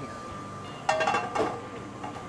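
Metal skillet clanking down onto the gas range about a second in, ringing briefly, with a second lighter clink half a second later, over a steady kitchen hum.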